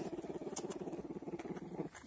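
A bear cub humming: a steady, rapid pulsing purr that stops just before the end.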